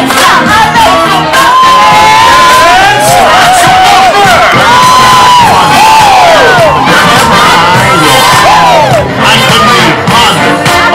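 A large crowd of people shouting and cheering together, many voices in long, rising and falling cries, with show music underneath.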